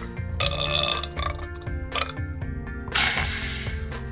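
Burping and retching sound effect for a sick toy chicken throwing up, over steady background music: one burst about half a second in and a longer, hissier one about three seconds in.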